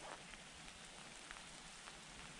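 Faint, steady hiss of light rain falling in woodland, with a few faint ticks of drops.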